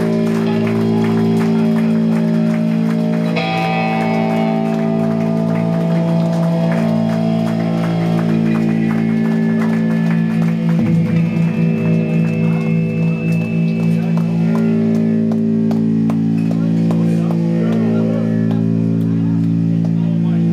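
Electric guitars and bass left ringing and feeding back through Marshall amps at the end of a hard-rock set: a loud sustained drone of held pitches that shift a few times, with a wavering patch about halfway through.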